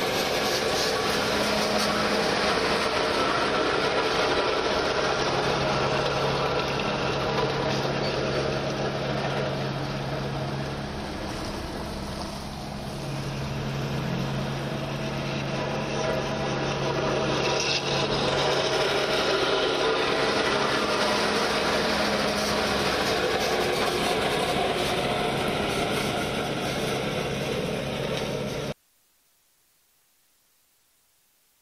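Escorts tandem road roller's engine running steadily: a low hum under a rough, noisy wash. The sound dips briefly about halfway through and cuts off abruptly shortly before the end.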